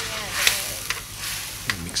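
Sweet and sour sauce with red onions sizzling in a metal wok as a metal spoon stirs it, with a hiss that swells about half a second in and a couple of sharp clicks of the spoon against the wok.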